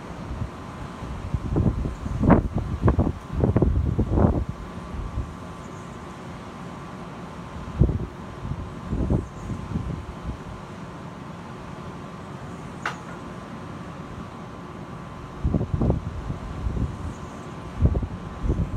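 Wind buffeting the microphone in irregular low gusts, heaviest in the first few seconds and again near the end. Under it runs a steady rush of distant surf.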